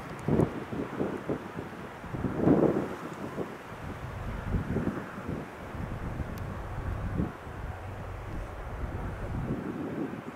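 Gusts of wind buffeting the microphone, the strongest about two and a half seconds in, over the low steady drone of a distant CN diesel freight train.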